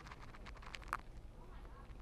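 Quiet pause in a large room: a steady low hum with a few faint short clicks.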